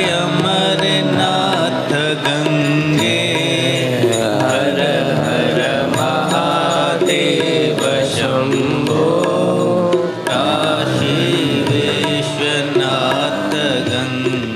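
Devotional Hindu bhajan: a voice sings a gliding, ornamented melody over continuous instrumental accompaniment.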